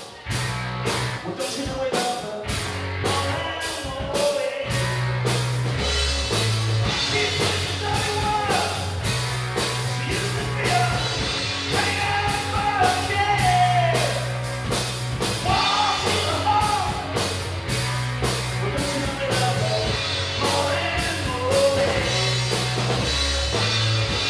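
Live rock band playing: drum kit keeping a steady beat, electric guitars and a bass guitar line, with a man singing lead.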